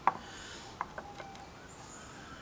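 A sharp click followed by a few small clicks and taps as a propellant grain in its casing is handled and set into a wooden sawing block.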